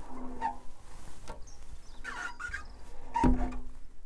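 Rubber squeegee blade squeaking across wet window glass as condensation is wiped off, in three strokes; the last, about three seconds in, is the loudest.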